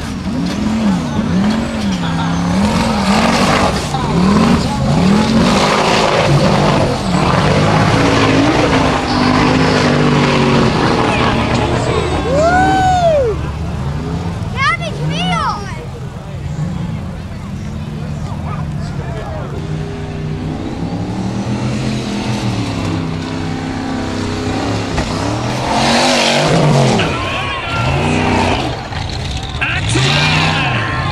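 Formula Offroad buggy engine revved hard, rising and falling again and again as the buggy fights for grip on a steep loose-dirt hillclimb, with its tyres spinning and skidding in the dirt.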